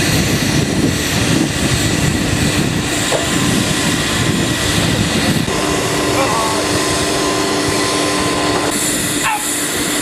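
Aircraft engine running steadily: a loud, even rush with a constant whine. The whine's pitch shifts slightly about halfway through.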